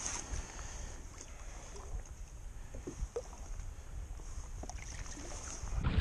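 Wind rumbling on the microphone over light water lapping at a kayak, with a small splash at the start as a redfish is let go over the side and a few faint knocks.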